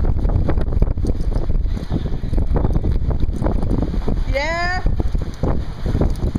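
Wind buffeting the microphone, a steady low rumble throughout. About four and a half seconds in, a person's short rising call is heard.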